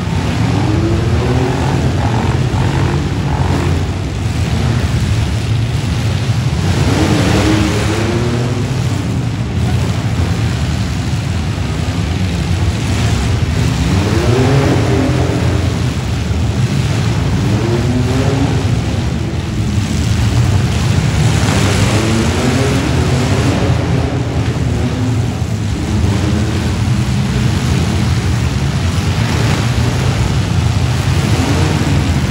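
Several demolition derby vans and trucks running their engines hard, loud and continuous, with pitch swinging up and down as drivers rev repeatedly and overlapping revs from different vehicles.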